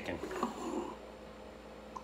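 A man sniffing a glass of beer up close: a soft breathy noise in the first half second, then low room tone.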